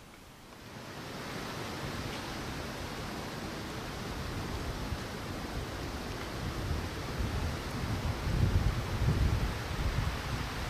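Wind noise: a steady rushing hiss, with stronger low buffeting on the microphone in the last few seconds.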